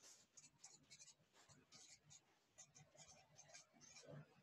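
Very faint, irregular strokes of a felt-tip marker writing on a board, a quick run of short squeaks and scratches.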